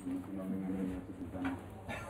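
Indistinct murmur of people's voices, with a low voice holding a steady tone.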